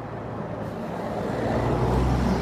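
A motor vehicle in the street drawing nearer, its low engine rumble growing steadily louder.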